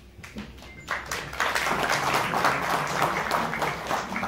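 Audience clapping. It starts about a second in and goes on steadily.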